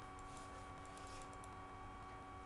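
Faint, quick clicks from computer controls while a sticker is dragged around the screen, bunched in the first second and a half. They sit over a steady background whine.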